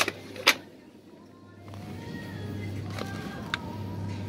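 Clear plastic clamshell pack of tomatoes being handled and lifted out of a cardboard box: a sharp plastic click about half a second in and a smaller one near the end. Under it are faint background music and a steady low hum.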